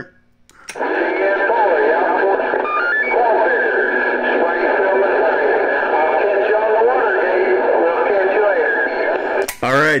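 A distant CB station's AM transmission over long-distance skip, coming from the speaker of a Cobra 148 GTL ST. A man's voice, laughing at first, is muffled and half-buried in steady static hiss with a thin, narrow radio sound. The signal comes in just under a second in and cuts off sharply shortly before the end.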